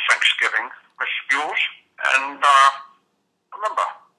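Speech only: a man's voice speaking in a recorded telephone message, the words not caught by the transcript.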